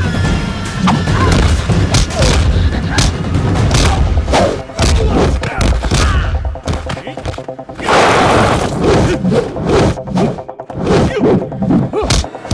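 Film fight-scene sound effects: a rapid series of punch and kick impact thuds over an action background score with heavy bass, and a longer burst of noise about eight seconds in.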